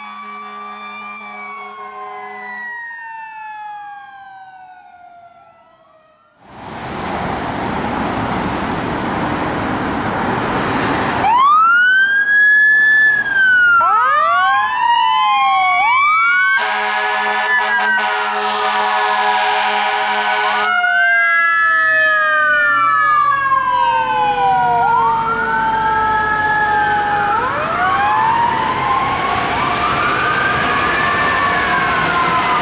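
Fire engine's siren wailing in rising and falling sweeps, with a long held air horn blast of about four seconds near the middle and slow falling siren tones after it. Before the siren starts there is a loud steady rushing noise, and at the very start fainter siren sounds fade out.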